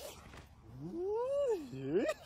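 A single drawn-out cry that starts about three quarters of a second in. It rises in pitch, falls away, holds low for a moment, then rises again near the end.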